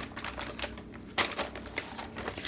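Pages of a thick paper instruction booklet being turned by hand: soft rustles and a few sharp paper snaps, the loudest two close together a little after a second in.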